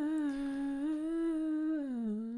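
A person humming one long, steady note into a close microphone; the pitch dips, rises a little, then drops lower near the end.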